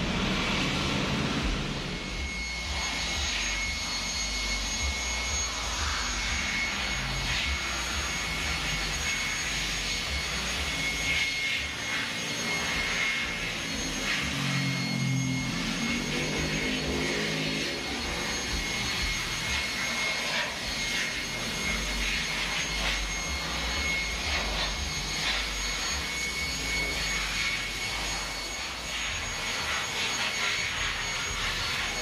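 An electric shop machine running steadily: a high, even whine over a rush of air.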